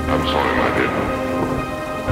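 A thunder-and-rain sound effect in a dark synth track: with the bass dropped out, a roll of thunder over rain swells in about a third of a second in and fades by the end, beneath held synth tones.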